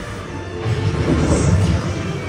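Ride soundtrack: music over a deep rumble that swells about half a second in and is loudest around a second and a half, as an explosion effect plays.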